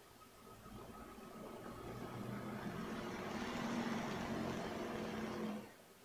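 A motor vehicle passing in the street, heard through an open front door: engine and road noise grow steadily louder for about four seconds, then fall away abruptly near the end.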